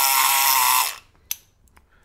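Multipick Kronos electric pick gun buzzing for about a second in a Master Lock No. 140 padlock, then stopping, with a short click shortly after. The padlock is picked open.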